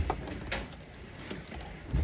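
Wires and crimped spade connectors on a boat's rocker switch panel being handled, giving small scattered clicks and rustling.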